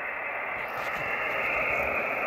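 Kenwood TS-480SAT transceiver's receiver putting out a steady, muffled hiss of static through its speaker, with no signal coming in.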